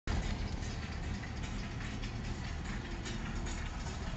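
Ford Cosworth turbocharged four-cylinder engine running steadily at low revs, heard from inside the cabin.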